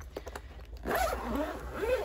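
Zip of a large fabric Arteza pencil case being pulled open: a quick run of small clicks, then a louder rasp from about a second in.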